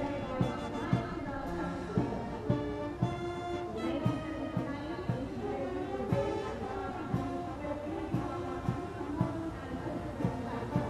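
Parade band music playing a march, with a steady beat about twice a second under held tones.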